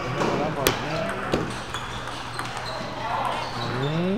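Sharp clicks of table tennis balls striking paddles and tables, a few scattered knocks with the loudest about two-thirds of a second in, over background chatter of voices.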